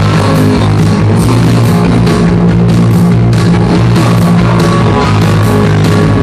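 Live rock band playing loud: electric guitar, bass guitar and drum kit, with a second drummer hitting a large standing drum, the drums keeping a steady beat.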